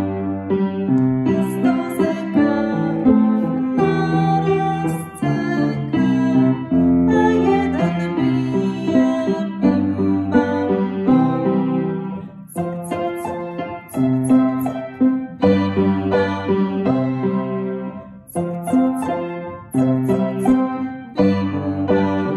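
Piano accompaniment played in chords with a woman singing a Polish children's song along with it.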